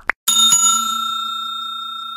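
A quick double click-blip of a button-press sound effect, then a bell sound effect rings out with several steady ringing tones, slowly fading: the notification-bell chime of a subscribe-button animation.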